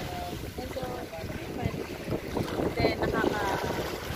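Wind buffeting the microphone in an uneven low rumble, with voices speaking over it at times.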